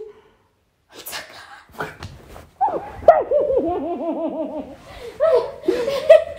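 Excited, high-pitched laughter in quick repeated pulses, after about a second of quiet and a couple of sharp breaths. It is a reaction of joy at happy news.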